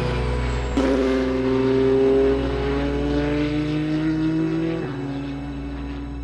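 Toyota TS050 Hybrid Le Mans prototype's turbocharged V6 accelerating hard. Its pitch drops at an upshift about a second in, climbs for about four seconds, then drops again at the next shift.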